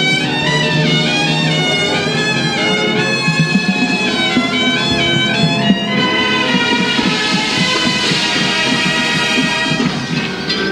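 Drum and bugle corps brass line playing loudly and continuously, a full ensemble of horns moving through changing chords, heard from the stands of an open-air stadium.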